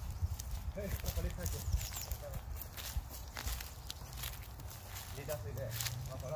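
Footsteps on dry leaf litter on a woodland floor, irregular crunches and rustles of walking, over a steady low rumble.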